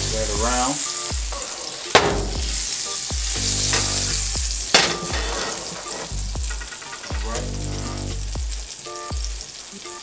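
Olive oil and melting butter sizzling in a hot cast iron skillet, a steady hiss with two sharp clicks about two seconds in and near five seconds.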